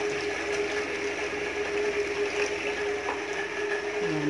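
A pan of rice-washing water boiling on a lit gas burner, a steady hiss and bubbling, over a steady background hum.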